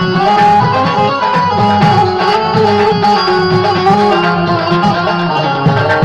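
Live devotional bhajan music: a harmonium plays a melody of held notes over a steady hand-drum rhythm.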